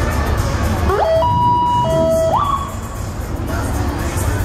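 A short siren blast, about a second and a half long: an upward whoop into a steady high tone, dropping to a steady lower tone, then sweeping up again. It sits over music with a low pulsing beat.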